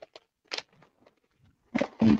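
A strip of small plastic bags of diamond-painting drills crinkling as it is handled, with a few short crackles and the loudest one near the end.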